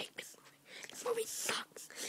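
A person whispering, low and breathy, with the hiss strongest around the middle.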